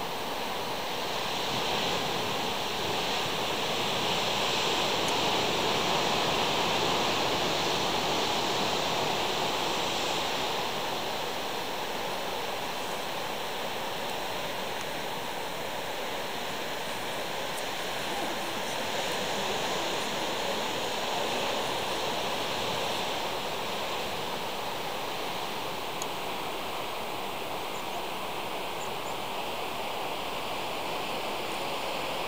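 Sea surf breaking on rocks at the foot of sea cliffs: a steady rushing wash that swells louder twice, a few seconds in and again past the middle.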